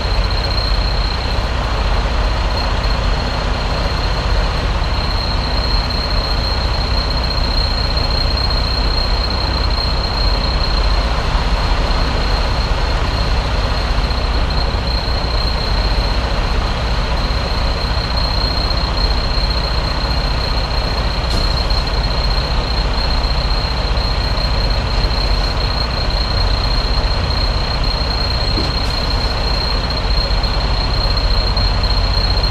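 Semi truck's diesel engine running steadily at low speed while the tractor-trailer backs up, with a constant high-pitched tone over it.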